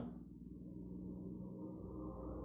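Quiet room tone: a low steady hum with a faint, high-pitched trill that comes and goes several times.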